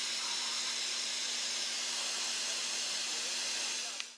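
Dental handpiece running: a steady hiss that stops abruptly at the end.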